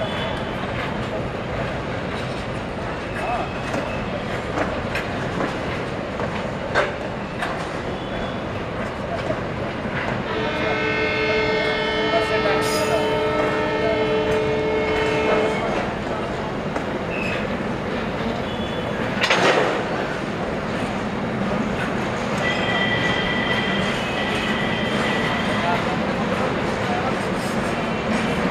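Container-laden freight flat wagons rolling past at speed, a steady noise of wheels on rail. Midway a train horn sounds for about five seconds. A short louder noise follows, and near the end a high steady tone lasts a few seconds.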